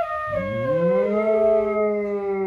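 A dog howling along to a bamboo flute. One long howl rises in pitch about half a second in and then holds steady, with the flute's notes sounding over it.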